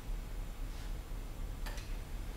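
Low steady hum with two faint, short clicks, one a little under a second in and one near the end.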